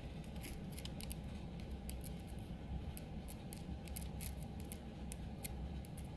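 A small metal hand tool clicking and scraping against the chain and sprocket inside the opened engine side case of a Honda XR200, a run of light, irregular metallic clicks over a steady low hum.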